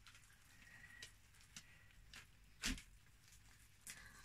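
Near silence broken by a few faint, brief wet squishes from gloved hands kneading cloth soaked in A1 acrylic resin. The loudest comes about two-thirds of the way in, and another just before the end.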